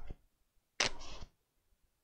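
A sheet of paper towel torn off the roll: one short, sharp tearing sound a little under a second in.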